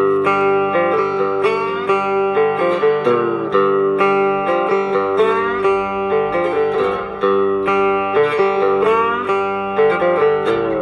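Three-string fretless cigar box guitar played with a slide: picked notes that glide up and down in pitch over a steady ringing drone.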